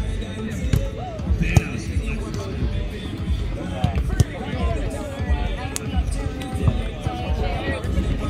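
Several sharp slaps of hands and forearms striking a volleyball during a rally, a second or two apart and the loudest about a second and a half in, over steady background music and voices.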